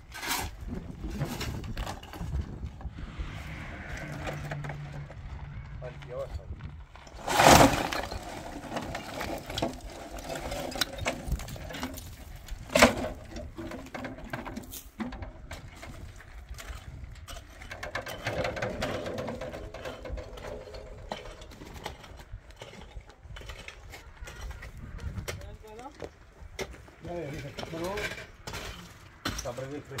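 Loose rocks knocking and clattering as they are gathered and tossed by hand, with scattered knocks throughout, one loud crash about a quarter of the way in and another sharp knock a few seconds later.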